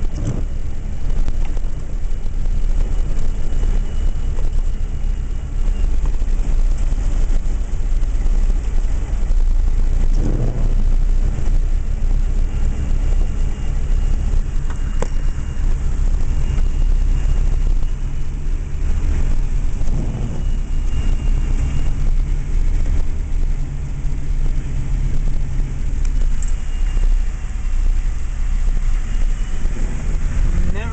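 A vehicle's engine idling, heard from inside the cab: a steady low hum under an even rushing noise.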